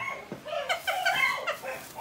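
A dog giving several short, high-pitched whining cries.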